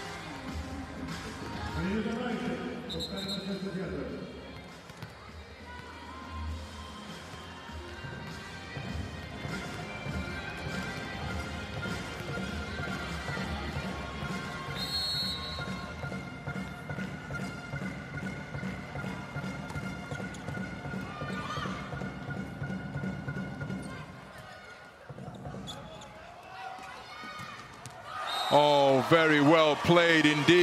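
Indoor volleyball arena sound: background music with a steady beat playing over crowd noise, with occasional thuds of the ball. Near the end the level jumps suddenly with loud crowd noise and voices as a point is won.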